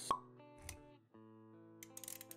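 Intro animation sound effects over soft background music: a sharp pop just after the start, then a low thud. The music drops out briefly near the middle and comes back with a few quick clicks near the end.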